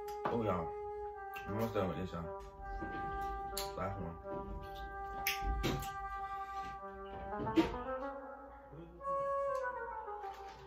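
Background music with long held notes. Over it come sharp snaps and crackles of seafood shells being cracked open by hand over a plastic bag, the loudest snap a little past halfway.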